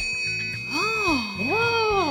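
Metal triangle ringing after being struck with a wooden drumstick: a steady, calming high shimmer of several tones that holds through. About a second in, a voice joins over it, sliding up and down twice in a long 'ooh'.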